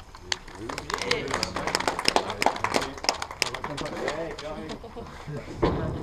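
A small group clapping and cheering, with voices mixed in; the clapping fades after about three and a half seconds, and a heavy thump comes near the end.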